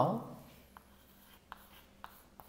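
Chalk writing on a chalkboard: a few faint, short scratches and taps as a word is chalked up.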